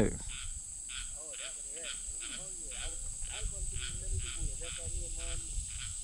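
Insects calling in a steady pulse about twice a second, with faint wavering calls of distant hounds baying.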